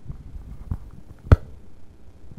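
A single sharp knock about one and a third seconds in, with a fainter one about halfway through, over low rumbling.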